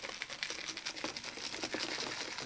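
Crushed glass trickling out of a pinched paper cup onto a resin-coated canvas: a dense, irregular run of fine crinkling clicks.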